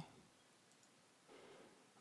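Near silence, with faint computer mouse clicks.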